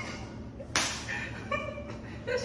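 A single sharp smack about three-quarters of a second in, dying away quickly, followed by a short pitched sound.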